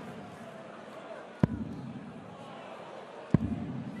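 Two steel-tip darts striking a Winmau bristle dartboard, two sharp thuds about two seconds apart, over a low arena crowd murmur. They are the last darts of a visit that scores a maximum 180.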